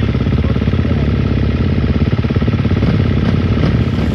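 Dirt bike engine idling steadily, a fast, even run of firing pulses.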